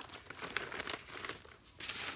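Paper gift bags crinkling and rustling as they are handled, turned over and set down, in irregular crackles.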